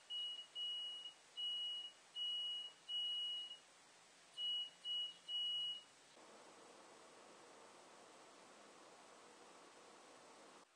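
Electric piezo buzzer run off a homemade five-cell lemon-juice battery, sounding a single high steady tone keyed on and off by hand in Morse code, meant as the amateur-radio CQ call. About nine short and long beeps over the first six seconds, then only a faint steady hiss.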